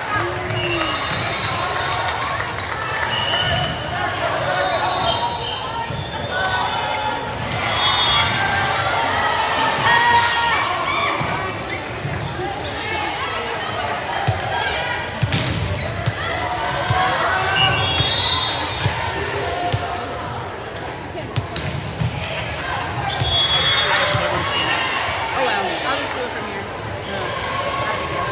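Volleyball game in an echoing gymnasium: constant chatter from players and spectators, short high squeaks of sneakers on the hardwood court, and the thud of the ball being served and hit, loudest around the middle.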